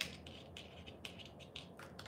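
Faint handling noise of thin craft wire and pliers: a scatter of light ticks and scratching as the bent wire piece is turned over in the hands.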